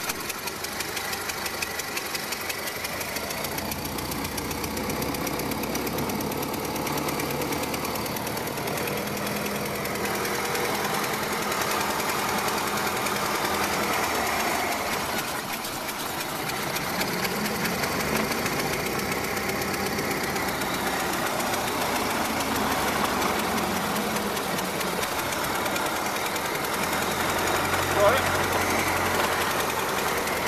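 Ford Model T four-cylinder side-valve engine running, heard from the seat beside the driver, with a fast even firing patter. It comes up just before the start and runs on steadily, with one sharp click near the end.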